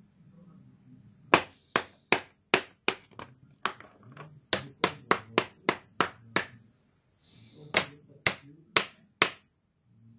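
A hand tapping sharply on a laptop's plastic case, about twenty taps at two to three a second with a short pause around seven seconds in; typical of knocking on a laptop lid to test for a loose connection in a failing display backlight.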